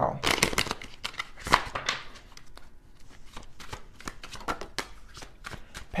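Tarot cards being shuffled by hand: a run of quick papery card snaps and slides, thickest in the first two seconds, then scattered.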